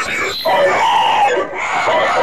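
Cartoon character voice shouting in two long stretches, its pitch and tone altered by a 'G Major' audio effect.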